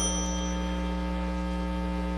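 A silver desk tap bell struck once at the very start, its high ring fading away within about a second. Under it is a steady electrical mains hum.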